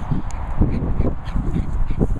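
Guinea fowl calling in a quick run of harsh, repeated notes, over heavy low thuds from someone walking briskly while handling the camera's microphone.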